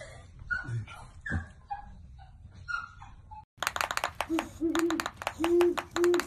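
A few faint squeaks and soft thumps. Then, about three and a half seconds in, a great horned owl gives several short, low hoots over a dense run of sharp clicks.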